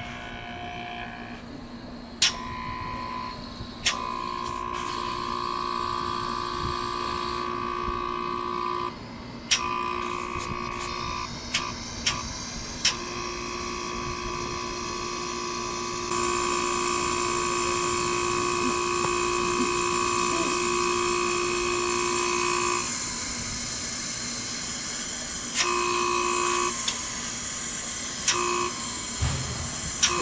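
Samsung 8-pyeong wall-mount air conditioner outdoor unit running: compressor and fan motor humming, with steady tones that cut in and out several times and a few sharp clicks in the first half. A brighter hiss joins about halfway. The compressor is drawing on the low-pressure side and discharging on the high side, and the unit is judged to be working normally.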